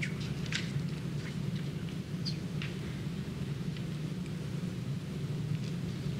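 Steady low background hum of a meeting room, with scattered faint clicks and ticks.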